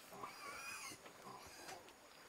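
A pig squealing faintly in short cries.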